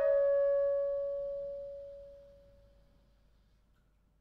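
A solo clarinet holding the last note of a descending phrase, one steady pitch that dies away over about three seconds.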